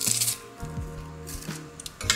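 Background music, with short crunching rustles and small clicks from a hand garlic press crushing garlic cloves: one rustle at the start, another about one and a half seconds in, and clicks near the end.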